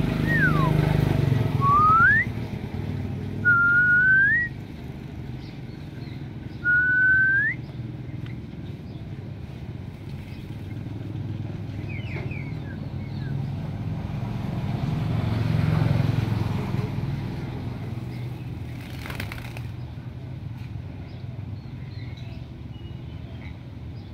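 Hill myna whistling four clear notes in the first eight seconds: one falling whistle, then three short rising ones. A low rumble runs underneath and swells about two-thirds of the way through.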